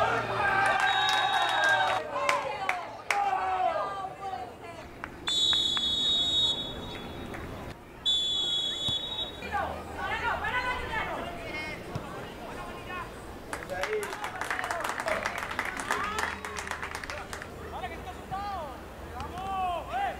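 Players and spectators shouting at a football match, with scattered sharp clicks in the first few seconds. A referee's whistle sounds twice, a long steady blast about five seconds in and a shorter one about eight seconds in.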